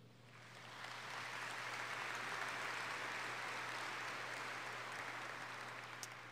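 Audience applause, building over the first second and tapering off near the end.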